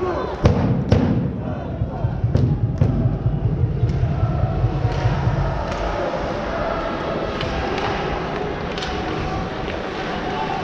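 Ice hockey play in an arena: sharp knocks of sticks and puck against the boards and glass, repeated irregularly, over a steady murmur of crowd voices. The low rumble underneath drops away about six seconds in.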